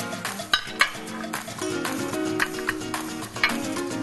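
Metal serving utensils clinking and scraping against a ceramic serving plate while baked mackerel and vegetables are spooned onto it, with several sharp clinks. Background music with sustained tones plays throughout.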